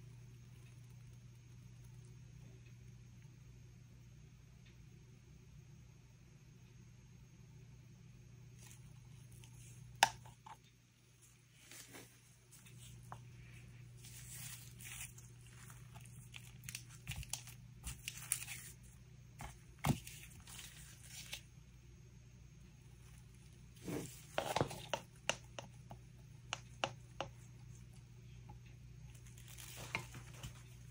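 Quiet handling noise of gloved hands working plastic resin-pouring cups and silicone coaster molds: scattered taps and clicks with stretches of rustling and crinkling, over a low steady hum.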